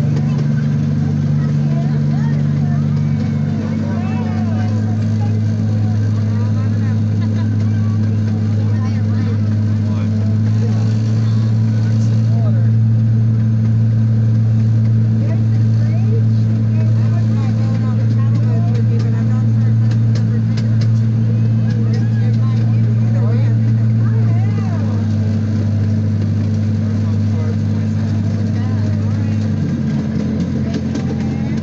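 A ride-on miniature park train running steadily, its low engine hum stepping in pitch a few times. Voices can be heard in the background.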